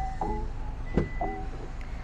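Power tailgate of a Hyundai Santa Fe sounding two short warning beeps as it is opened. A sharp click of the latch releasing comes about a second in.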